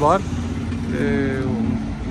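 A motor vehicle engine running steadily as a low hum, under short bursts of talk.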